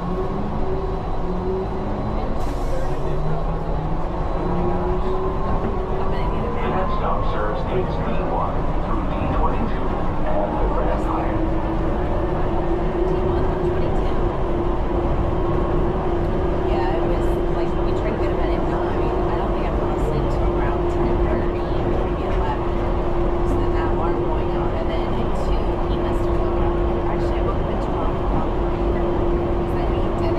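Automated airport people-mover train accelerating after departure: its electric drive whines up in pitch over the first ten seconds or so, then holds one steady tone at cruising speed over the continuous running noise of the car.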